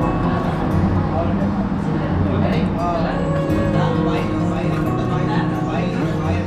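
Music with held notes and a voice singing, steady throughout.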